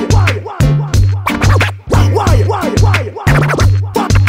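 Hip hop DJ set: a loud, even bass beat with turntable scratching laid over it, the scratches sweeping down in pitch again and again.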